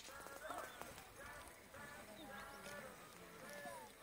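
Faint hoofbeats of a horse cantering on a sand arena, with faint voices talking throughout.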